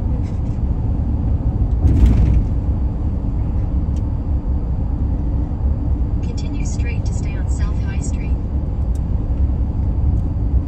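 Steady low road and engine rumble inside a pickup truck's cabin while driving, with a brief louder bump about two seconds in.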